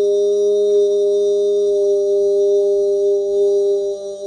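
A man's voice holding one long, unchanging sung tone (vocal toning), with a slight waver near the end.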